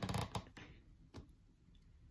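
Quiet handling of fabric and thread: a few soft clicks and rustles in the first half second, one more small tick about a second in, then a quiet stretch.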